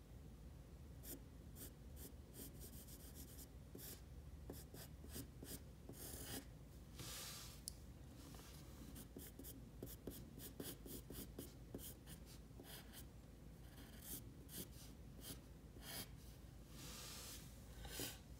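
Faint scratching of a graphite pencil on paper, in many short, quick sketching strokes, with a few longer strokes about seven seconds in and again near the end.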